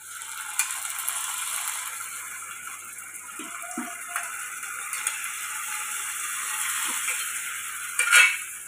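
Steady crackling sizzle from a steel pot of tempering on the stove as cooked colocasia leaves are spooned in, with a few light knocks of a steel spoon against the pans.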